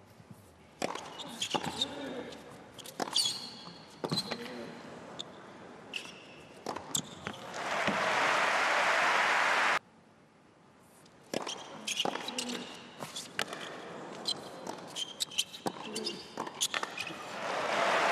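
Tennis rally: a run of racket strikes and ball bounces on a hard court, then the crowd applauding, cut off abruptly by an edit. After a short lull, a second rally of racket strikes and ball bounces.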